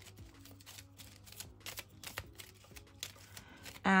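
A small deck of cards being shuffled by hand: a quick, quiet run of light clicks and riffles.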